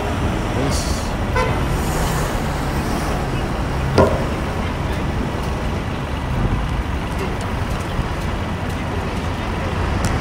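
City street traffic: a steady rumble of passing vehicles. A short high-pitched tone comes about a second and a half in, and a sharp knock about four seconds in is the loudest moment.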